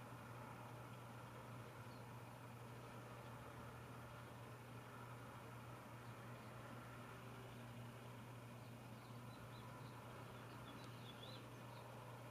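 Near silence: room tone with a faint, steady low hum.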